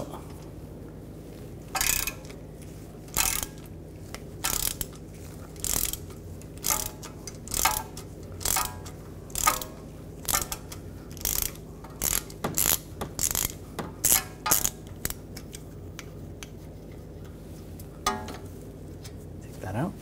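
Ratchet with a 5 mm hex socket on an extension clicking in short bursts, about one a second, as it backs out the screw that holds an ABS wheel speed sensor in the steering knuckle. The clicking stops about three-quarters of the way through, once the screw is loose.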